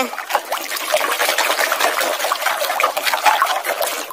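Muddy water sloshing and splashing in a plastic tub as a hand scrubs a plastic mask under the surface, an irregular stream of small splashes and swishes.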